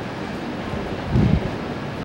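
Steady background noise of an open-air railway platform, with a brief low thump or buffet about a second in.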